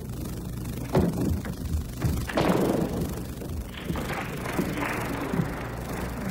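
Table tennis rally: a few sharp knocks of the celluloid ball off the bats and table, about half a second apart, with the last and loudest a little past two seconds in. A rise of crowd noise from the arena follows as the point ends.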